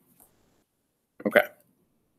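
Near silence, broken once about a second in by a man briefly saying "okay".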